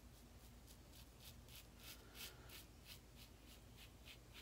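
Faint scratchy rasps of a Blackland Vector stainless-steel single-edge razor with a Feather Pro Super blade cutting lathered neck stubble, in quick short strokes a few times a second.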